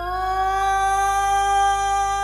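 One long, steady electronic keyboard note, sliding up slightly as it starts and then held, over a steady low hum.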